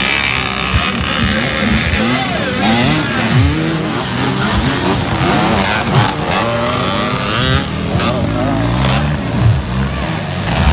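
Several dirt bike engines revving up and down at once, their pitches rising and falling over one another as the riders work the throttles.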